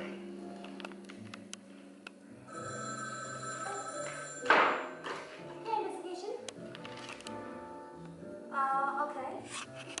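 A telephone ringing for about a second and a half over background music, followed by a short, loud noisy burst. Speech comes in near the end.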